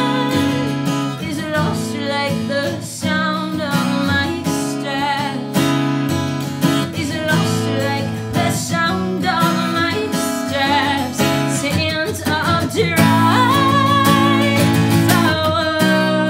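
A woman singing live to her own strummed acoustic guitar. The voice comes in phrases, with vibrato on held notes.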